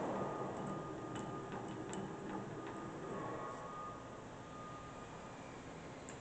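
Bridgeport EZ-Trak CNC mill's axis drive jogging the table, heard as a faint steady whine with a few light ticks over a low hum; the spindle is not running.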